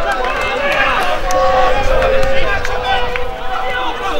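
Several voices of players and spectators shouting and calling out over one another at a football ground.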